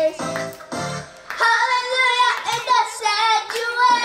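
Children singing a praise song over a backing track. About a second and a half in, the bass drops away and the voices hold long notes.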